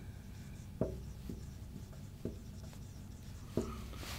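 Marker pen writing on a whiteboard: faint strokes with a few light ticks as the tip meets the board.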